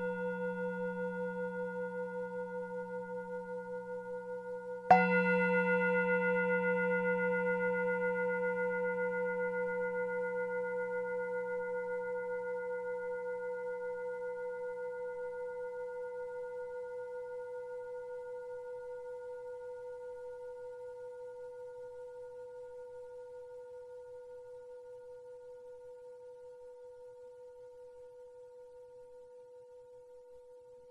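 Buddhist bowl bell struck once about five seconds in, while the ring of an earlier strike is still sounding. It is left to ring out, a steady tone of several pitches that wavers in loudness as it fades slowly.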